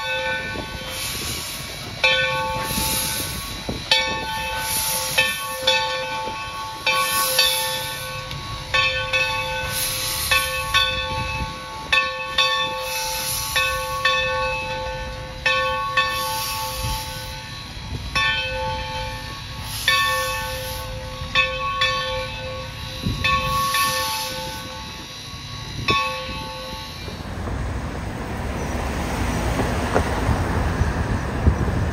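Steam locomotive's bell ringing steadily, about one stroke a second, over the low rumble of the moving train. The ringing stops about 27 seconds in, leaving wind-like noise.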